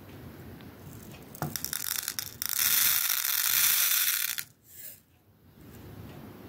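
Small round desiccant beads pouring out of a cut-open copper tube, a refrigeration filter drier, into a plastic cup. A few scattered clicks come first, then a dense rattling stream for about two seconds that cuts off suddenly.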